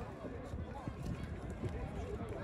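Indistinct men's voices talking, over a steady low outdoor background rumble.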